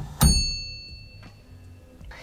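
NRG Quick Release 2.0 snapping home as the steering wheel is pushed on all the way: a short thunk and then its bright metallic ding, which rings out and fades over about a second and a half. The ding marks the wheel locked onto the hub.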